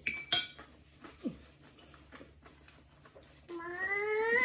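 Metal forks clinking and scraping on ceramic plates during fast eating, with a sharp clink about a third of a second in. Near the end a drawn-out tone begins, rising in pitch.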